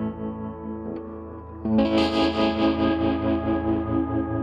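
Red semi-hollow electric guitar played through effects, with echo and chorus, over the sustained low notes of a bowed upright bass, making slow, ringing ambient tones. About a second and a half in, a louder, brighter guitar swell comes in and rings on.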